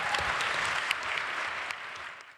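Audience applauding, a steady stretch of clapping.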